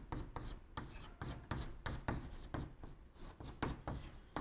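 Chalk writing on a blackboard: a rapid run of short scratching strokes, about four or five a second, as Chinese characters are written.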